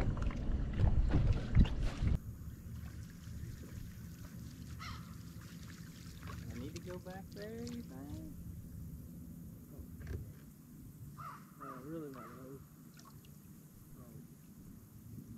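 Wind buffeting the microphone over boat and water noise, which cuts off abruptly about two seconds in. Crows then caw in the quieter background, in two short series of repeated calls about halfway through and again near the end.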